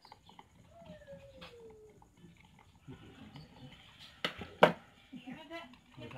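Hands working a plastic motorcycle speedometer housing during disassembly: light scattered clicks, then two sharp clicks about half a second apart a little past the middle.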